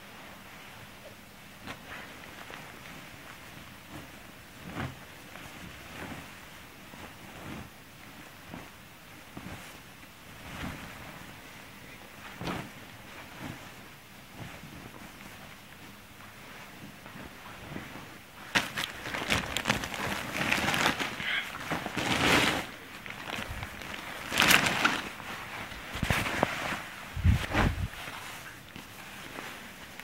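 Clothes being rummaged through by hand: soft fabric rustles and small knocks, becoming louder and busier about two-thirds of the way in, with a low thump near the end.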